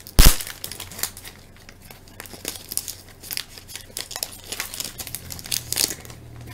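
Foil wrapper of a baseball card pack being torn open and crinkled by gloved hands, with one loud sharp crack just after it starts, then scattered crackling as the wrapper is worked and the cards are slid out.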